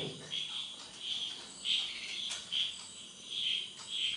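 Irregular high-pitched chirping, short chirps repeating roughly every half second, with a single click about two and a half seconds in.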